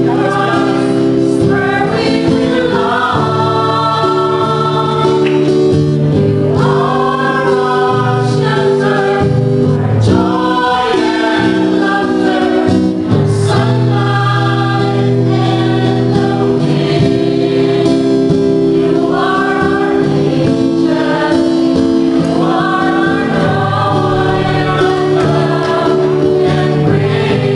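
A small mixed choir of men and women singing a religious song together in long held notes, accompanied by an acoustic guitar.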